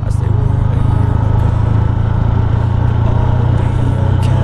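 Motorcycle engine running steadily at cruising speed, a constant low hum under a wash of wind and road noise.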